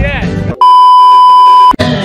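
An edited-in censor bleep: one loud, steady, high-pitched tone lasting about a second, starting and stopping abruptly, covering a word on the soundtrack.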